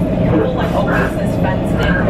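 Long Island Rail Road electric commuter train running at speed, heard from inside the passenger car: a steady low rumble with a constant hum, and passengers' voices in the car.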